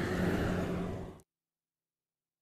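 Steady outdoor background noise with a faint low hum, fading out a little over a second in, then dead digital silence at an edit.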